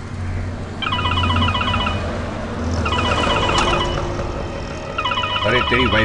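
Mobile phone ringing with a repeated electronic trill ringtone, in bursts about a second long every two seconds, over the low rumble of a car running on the road.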